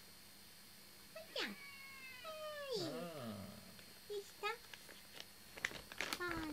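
A domestic cat meowing: a quick falling mew, then a longer meow about two seconds in that slides down in pitch and wavers, and a short chirp-like call near the end.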